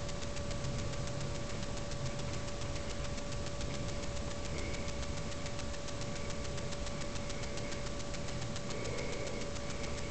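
Steady electrical whine with a constant hiss and a fast, even ticking, the kind of interference noise a cheap camera's microphone picks up from its own electronics.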